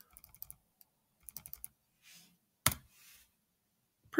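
Quiet keystrokes on a computer keyboard: a quick run of key taps, a second run of about five taps a little over a second in, then one harder key press, the Enter key, near three seconds in.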